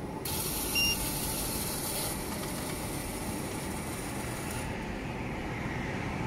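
Water spraying inside an orange juice vending machine: a steady hiss, with a short electronic beep about a second in.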